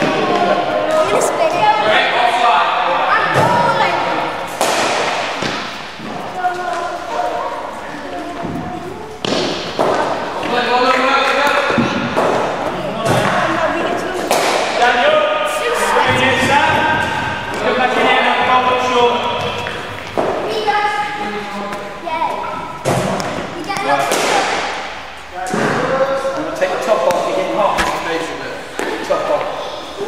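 Indistinct voices echoing in a large indoor sports hall, broken by repeated sharp thuds of cricket balls being bowled, pitching and struck by the bat in the practice nets.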